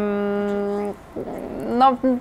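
A woman's hesitation hum, one long level "mmm" held with closed lips for about a second, followed by a short breath in just before she speaks again.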